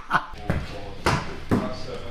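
A football being kicked against a wall, with a sharp thud about every half second, four in all.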